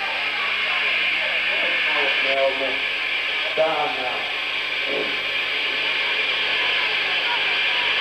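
Stage noise between songs: a steady hiss with indistinct voices and a few short sliding tones partway through, through a camcorder's microphone.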